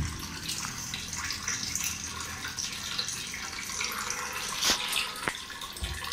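Water running steadily out of a hose into a plastic storage tank, with a few light clicks near the end.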